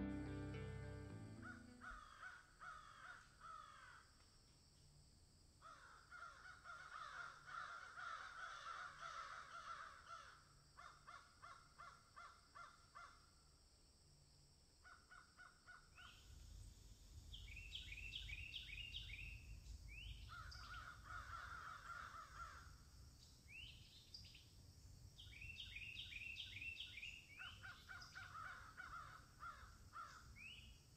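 Crows cawing faintly in repeated bursts of several harsh calls, with pauses between the bursts.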